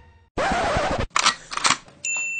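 Scratching sound effect in the style of a DJ record scratch: one longer scratch starting about a third of a second in, then two short ones.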